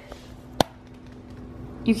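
A single sharp click about half a second in, over a faint steady hiss.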